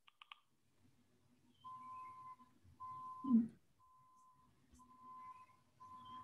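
Faint electronic beeping: a single steady tone that sounds for about half a second roughly once a second, over a low hum. A person's brief "hmm" about three seconds in is the loudest sound.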